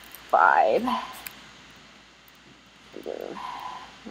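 Mostly speech: a drawn-out spoken sound about half a second in and the word "blue" near the end. In the quiet between, a few faint clicks from computer keys being typed.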